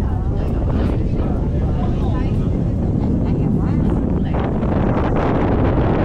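Steady rush of wind and rumble of a moving aerial cable car, with passengers' voices talking over it.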